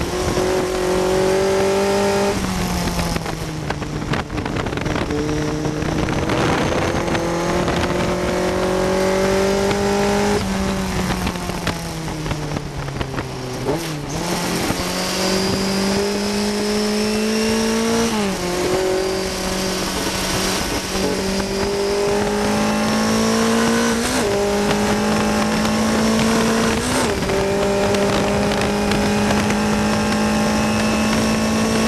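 1960 Cooper T53 Lowline racing car's engine heard on board at race pace. Its note sinks steadily for the first dozen seconds as the car slows through a bend. It then climbs again under acceleration, broken by quick gear changes at about 18, 24 and 27 seconds in.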